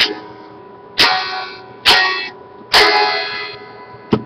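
Electric guitar with a capo, strummed in three chords about a second apart, each left to ring and fade: the slowing closing chords of the song.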